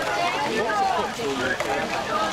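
Several voices overlapping, talking and calling over one another, with no single clear speaker.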